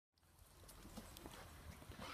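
Near silence fading in: faint outdoor background noise with a few light clicks.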